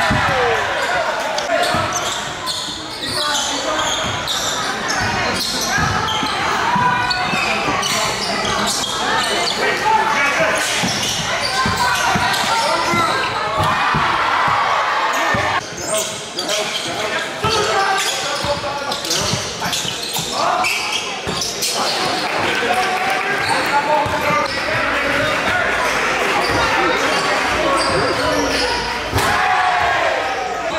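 Live basketball game sound in a gymnasium: a basketball dribbling on a hardwood court, over steady chatter and shouts from players and spectators, echoing in the hall.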